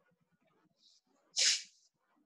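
A person sneezing once: a faint breath in, then a short, sharp sneeze about a second and a half in.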